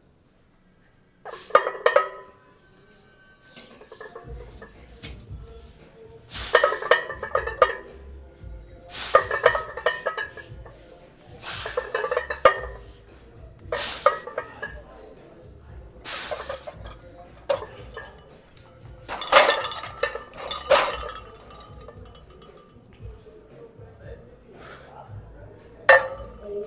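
Iron weight plates clanking and rattling on a 225-lb barbell during back-squat reps, a sharp clank roughly every two and a half seconds, with a last clank as the bar goes back into the rack at the end.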